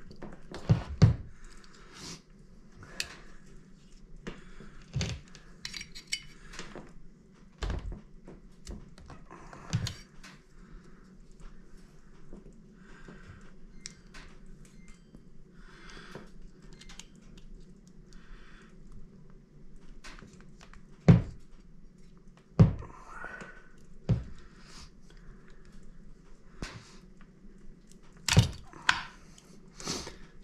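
Small hand tools working at the plastic limiter caps on a Husqvarna 353 chainsaw carburetor's mixture screws, cutting them off: scattered clicks, taps and scrapes of metal on metal and plastic, with a few louder sharp clicks, the loudest about two-thirds of the way through.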